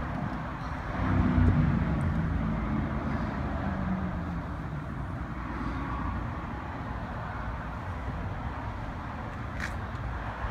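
A motor vehicle passing by: its engine note swells about a second in, then falls in pitch and fades over the next few seconds, over a steady low outdoor rumble.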